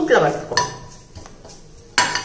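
A metal spoon stirring and scraping dry grated coconut around a stainless steel frying pan, with a sharp clink of spoon on pan about half a second in and another at the end.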